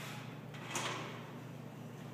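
A loaded barbell lifted off the bench rack's hooks at the start of a bench press: one short metal knock and scrape about three-quarters of a second in, fading over about half a second.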